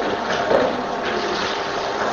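A steady hum with hiss: the background noise of the recording, with no clear event in it.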